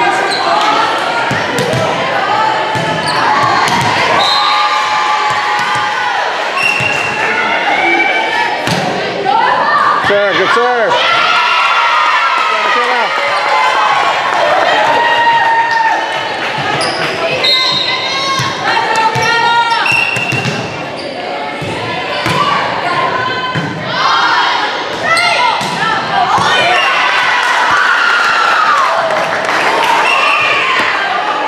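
Volleyball being hit and bouncing on a hardwood gym floor, mixed with players' shouted calls and spectators' chatter echoing in a large gym.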